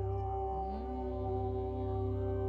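Background music: a sustained ambient drone of steady held tones over a low hum, with a faint sliding tone about half a second in.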